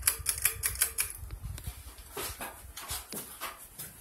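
Ceiling fan running, with a quick run of sharp light clicks in the first second and a few more scattered clicks later.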